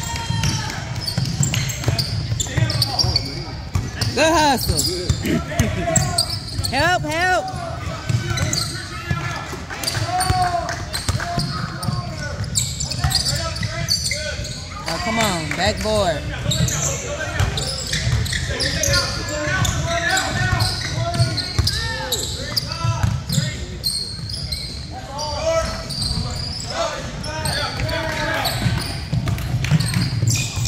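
Basketball game in a gym: a ball bouncing on the hardwood court over and over, with sneakers squeaking, players and spectators calling out, and brief high rising-and-falling squeals here and there.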